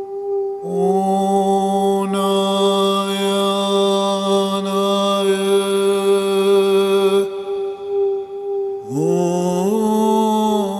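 Meditation music: a long chanted mantra-like vocal note held over a steady drone. The voice holds one long low note from about half a second in to about seven seconds, then a new note starts near the end and slides upward in pitch.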